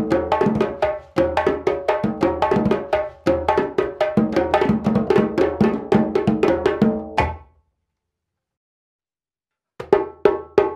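Djembes playing an interlocking ternary groove of three parts with no second cadence, a type 1 ternary groove: a steady stream of sharp hand strokes with deep bass notes. The playing stops about seven seconds in, there are about two seconds of silence, and a new groove starts right at the end.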